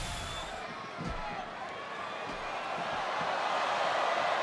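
Arena crowd noise with a few dull thuds of wrestlers moving on the ring canvas, about a second apart in the first half.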